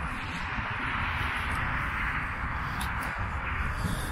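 Wind buffeting the microphone: an uneven low rumble under a steady rushing noise.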